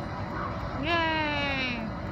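A high human voice calling out one long drawn-out note about a second long, its pitch jumping up at the start and then sliding slowly down, over faint outdoor background noise.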